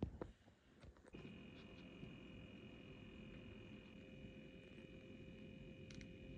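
Small tabletop humidifier switched on: a few faint clicks, then about a second in a faint steady high whine with a low hum starts as it begins to run.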